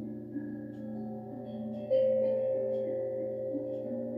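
Singing bowls ringing in long, overlapping, wavering tones. About two seconds in, a fresh strike sounds a new, brighter tone that rings on.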